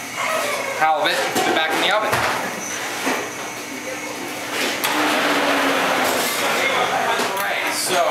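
Commercial kitchen sounds: a few knocks and clatter of cookware in the first few seconds, then a steady noisy hum, with some indistinct voice.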